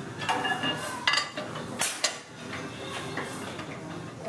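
Iron weight plates and a steel barbell clinking and clanking on a squat rack as they are handled: several sharp metallic clinks with a brief ring, the loudest about two seconds in.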